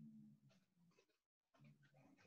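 Near silence: a faint low-pitched hum that fades out about a second in and comes back near the end.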